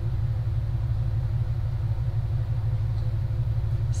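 A steady, unchanging low hum, with a few faint higher tones over it.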